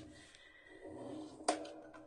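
Faint rubbing of a bone folder along a scored fold in card stock as it is burnished, with one sharp tap about a second and a half in.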